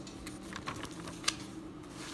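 A hand handling the pages of a lined paper notebook: a few light paper clicks and taps, with one sharper click a little after halfway.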